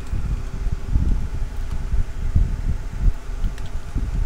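Low, uneven background rumble of room and microphone noise, with a few faint keyboard clicks as a command is typed.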